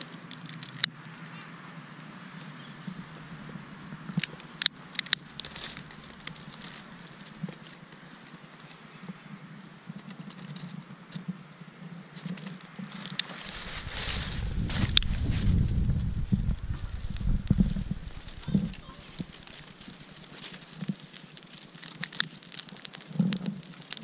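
Dry corn stalks and leaves rustling and starting to crackle as a long-nosed lighter flame is held to them, with scattered sharp clicks. About two-thirds of the way through there are several seconds of low rumbling.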